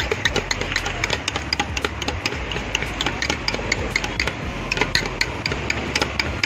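Steel spoon stirring a chaat mixture in a large steel bowl, clinking against the bowl many times in quick, irregular strokes.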